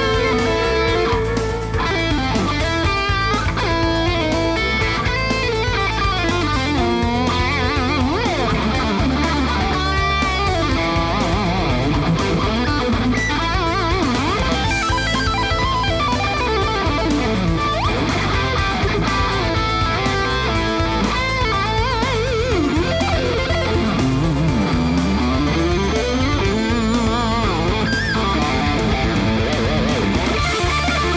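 Squier Contemporary electric guitar played through a distorted, high-gain tone: a fast shred-style lead with quick runs, string bends and wide vibrato, and some swooping pitch glides.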